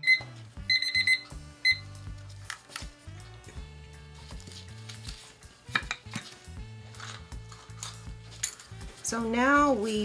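Digital kitchen timer beeping as its countdown reaches zero, marking the end of the five-minute resin mixing time. A short beep at the start, a quick run of beeps about a second in and one more shortly after, over background music.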